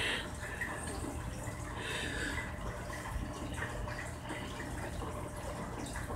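Faint, soft wet sounds of fingertips smoothing a freshly applied peel-off face mask over the skin, over a steady low hum.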